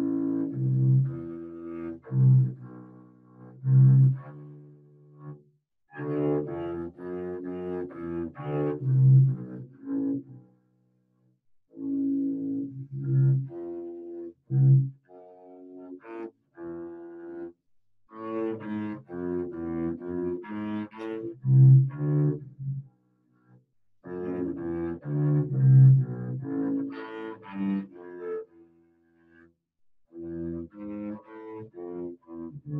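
Solo double bass played with the bow: an étude in A minor, in phrases of a few seconds separated by short breaks.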